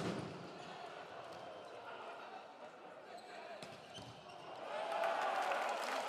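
Volleyball arena crowd voices with a few sharp thumps of the ball being struck during a rally; the crowd noise swells near the end as the point plays out.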